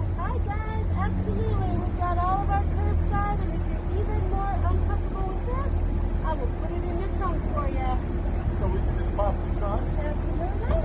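Car engine idling with a steady low rumble, under indistinct conversation at a car window.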